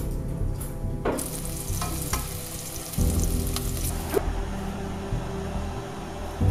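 Food sizzling as it fries in a pan on a stove, over background music; the sizzle is strongest from about a second in until about four seconds.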